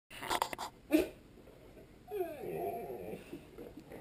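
A dog whining, a wavering, drawn-out whimper lasting about a second from about two seconds in. It follows a few sharp knocks in the first second.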